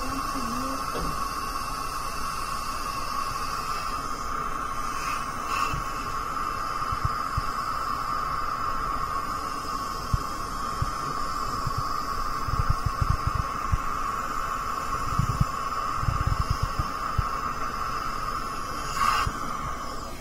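Dental suction running with a steady hiss-like whir. Low knocks and rumbles come in during the second half.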